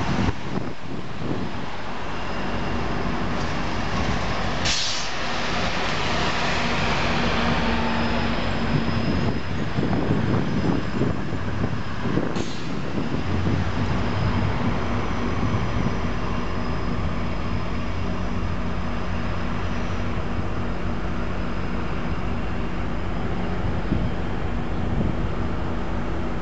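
GO Transit diesel locomotive running steadily, a low engine hum, with two short air hisses, about five seconds in and again about twelve seconds in, typical of a train's air brakes.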